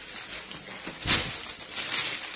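Crinkly white wrapping crackling as a package is unfolded by hand, with one sharp, louder crinkle about a second in.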